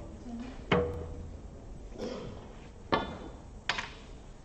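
Snooker balls knocking and clicking on the table: one loud knock with a brief ring about three-quarters of a second in, a softer knock, then two sharp clicks near the end, the last one doubled.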